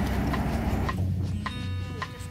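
Narrowboat's diesel engine running steadily under way, a low rumble; background music comes in about halfway through.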